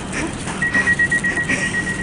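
A high, steady electronic alarm tone starts about half a second in and holds, which is taken for a fire alarm, over a low steady hum.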